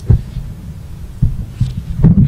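Handling noise from a table microphone being picked up and moved on its stand: deep thumps and rumble, the loudest just after the start and two more over a second later, over a low steady hum.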